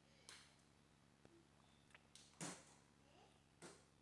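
Near silence with a few faint mouth and breath noises from a person chewing food, the clearest a little past halfway.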